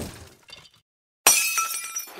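Glass-shattering sound effect. The tail of one crash dies away in the first moments, then a second crash hits suddenly just past a second in, with ringing tones as it fades.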